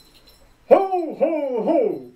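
A man's voice calling out Santa Claus's "Ho, ho, ho!": three loud calls starting about two-thirds of a second in, each falling then rising in pitch.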